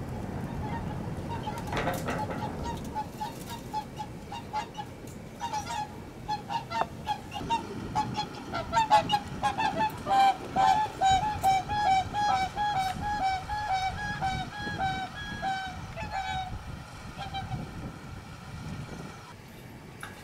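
Whooper swans calling as they fly in: loud honking calls, scattered at first, then a fast run of several calls a second, with more than one bird overlapping, from about eight to sixteen seconds in, fading out near the end.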